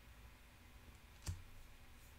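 Near-silent room tone with a single short click about a second in, from small objects being handled on a tabletop.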